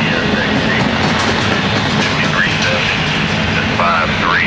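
Double-stack intermodal well cars rolling past, their steel wheels running on the rails in a loud, steady noise.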